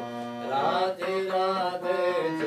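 Harmonium playing a devotional bhajan melody over held notes, with a man's voice singing along in wavering, gliding phrases.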